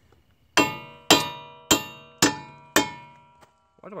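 Five hammer blows on a steel wheel stud in a car's wheel hub, about two a second, each one clanging and ringing briefly after it; they are driving an old wheel stud out of the hub.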